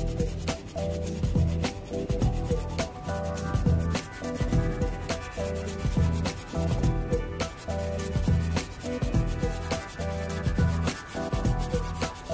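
Sanding sponge rubbed back and forth against the bare die-cast metal body of a model car, in a run of repeated scratchy strokes.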